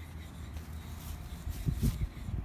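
Low rumble of wind and handling noise on a phone microphone, with a short louder bump near the end.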